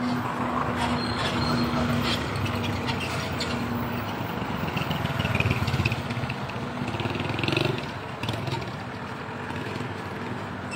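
Street traffic: motor vehicle engines running, with a motorbike or scooter passing close by about halfway through, when the sound is loudest.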